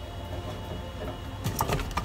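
Steady low hum of a washing machine running in the background, with a few light clicks and knocks near the end as pieces of celery and ginger are dropped into a plastic juicer jar.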